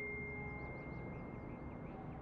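The last of a high, bell-like chime fading away, leaving quiet room tone with a few faint high chirps.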